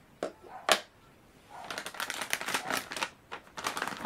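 Clicks and plastic clatter from handling a clear acrylic hinged stamping platform as it is closed up: two sharp knocks in the first second, then a quick run of small clicks and rustles.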